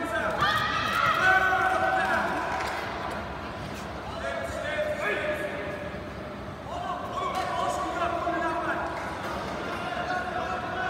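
High-pitched shouting voices from the hall during a karate kumite bout, coming in surges: loudest over the first two seconds and again from about seven seconds in.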